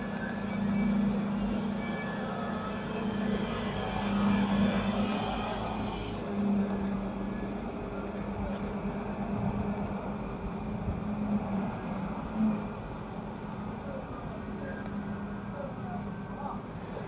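Steady, low-pitched engine hum from a motor running nearby, swelling and fading in level.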